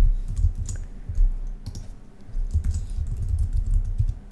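Typing on a computer keyboard: a run of quick, irregular keystrokes entering a password, with a brief lull about halfway through.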